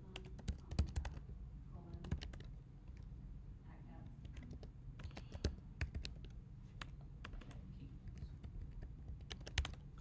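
Typing on a computer keyboard: irregular key clicks in short bursts with pauses between, the busiest flurry in the first second.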